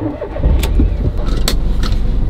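A car engine starting and settling into a steady idle, heard from inside the cabin, with three short sharp clicks over it.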